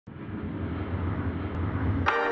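A steady low rumble that fades in from silence at the start and holds even.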